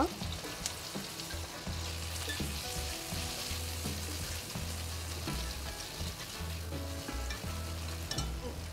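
Cherry tomatoes, onion and garlic sizzling steadily in hot olive oil in a frying pan, with a few faint clicks.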